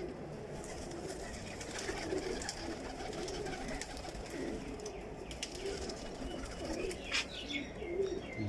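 Domestic tippler pigeons cooing in a loft, a low, irregular murmur of coos, with a few short clicks near the end.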